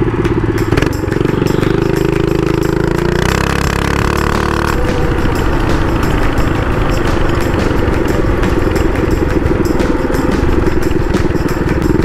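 Predator 212cc single-cylinder four-stroke engine of a Baja mini bike running under way, heard from on the bike as a loud, steady engine note.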